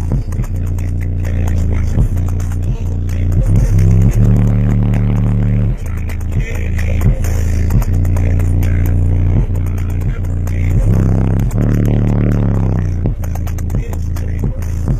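Bass-heavy music played very loud through two EMF Banhammer 12-inch subwoofers, heard inside the car's cabin: deep bass notes held a second or two each, shifting in steps, with rattling and clatter over them.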